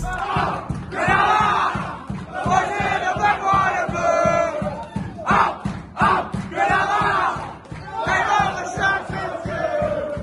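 A rugby league team shouting and chanting together in a dressing-room celebration after a win. The loud group calls come in bursts of about a second, one after another.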